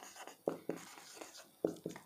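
Marker pen writing on a whiteboard, faint: a few short, separate strokes of the pen tip squeaking and scratching on the board.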